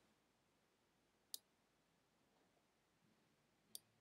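Near silence with two faint, sharp computer mouse clicks, one about a second and a half in and one near the end.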